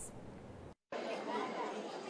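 Faint room tone, a short dead gap a little under a second in, then the chatter of many people talking at once in the background.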